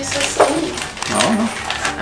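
Plastic stock-powder packet crinkling in the hands, with a short whine-like vocal sound about a second in.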